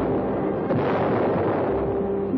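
Cannon fire: a loud blast about two-thirds of a second in, its rumble running on under orchestral music.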